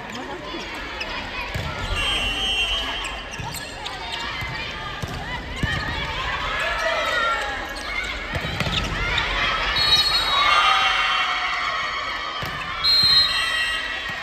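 Indoor volleyball rally in an echoing gymnasium: the ball being struck and players shouting calls to each other. Near the end a short, loud, high whistle sounds as the rally ends.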